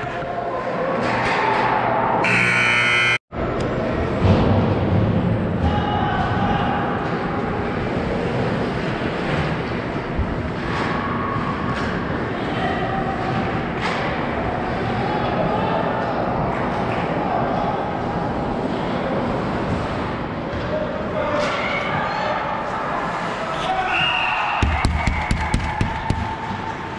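Youth ice hockey game sounds in an echoing rink: skates and sticks on the ice, puck and stick knocks, and scattered children's and spectators' voices. A quick run of sharp clacks comes near the end.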